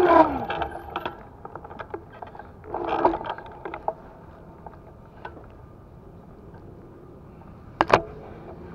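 Irregular light mechanical clicks and ticks from the moving vehicle the camera rides on, with a short louder rattle about three seconds in and a sharp click near the end.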